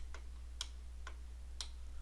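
A few isolated sharp ticks from a computer mouse, spread about a second apart, over a steady low hum.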